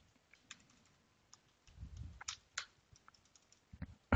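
Faint computer keyboard typing: a few scattered soft keystrokes as a command is entered, with a soft low sound about two seconds in.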